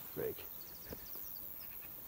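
Faint, rapid high-pitched chirps from an insect in long grass, a quick run of short ticks lasting about a second, over a quiet summer-meadow background.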